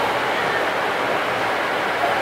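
Steady ambient noise of a railway station platform: a continuous even rush with a faint low hum underneath.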